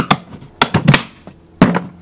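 Plastic storage box lid being set down and pressed onto its box: a few short plastic knocks and clicks, the loudest about one and a half seconds in.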